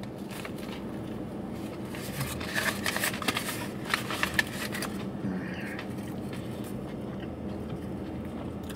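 Close-up chewing of a bite of fried, heavily breaded chicken sandwich, the breading crunching in a cluster of crisp crackles from about two seconds in, then quieter chewing.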